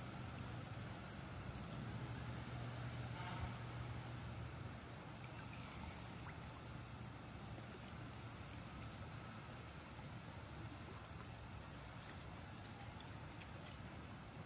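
Faint steady low motor hum, strongest in the first few seconds and then weaker, over a soft wash of water and wind, with a few faint clicks.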